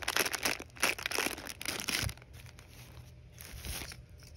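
Plastic packaging and shopping bags crinkling as they are handled, dense for about two seconds, then dropping to faint rustles.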